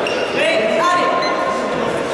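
Indistinct voices and chatter echoing in a large sports hall, with one voice holding a steady note near the middle.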